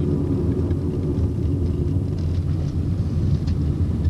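Steady low rumble of a car on the move, heard from inside the cabin: engine hum and road noise.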